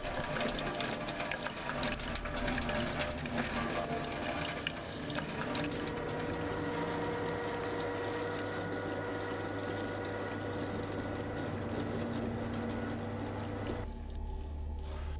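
Water running from a tap into a metal sink and splashing down the drain. About six seconds in, this gives way to an electric meat grinder running steadily, its motor humming as it grinds meat.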